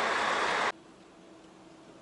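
Loud, steady traffic noise that cuts off abruptly under a second in, giving way to a faint, steady low hum.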